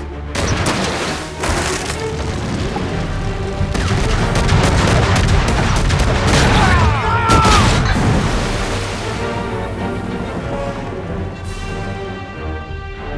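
A film soundtrack: an orchestral score with a ship's cannons booming several times over it during a battle at sea.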